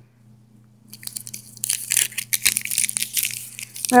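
Plastic snack-bar wrapper crinkling as it is handled: a dense run of crackles starting about a second in, over a faint low steady hum.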